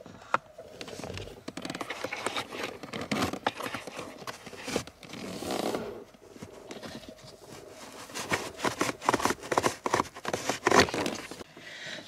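Cabin air filter being pulled by hand out of its plastic housing under the dashboard: a run of scrapes, rustles and sharp clicks from the filter and plastic parts.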